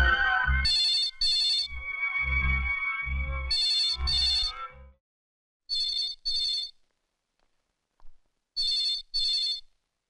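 Telephone ringing in double rings, four pairs in all, one pair roughly every two and a half seconds. A film score with low beats plays under the first two pairs and fades out about halfway through.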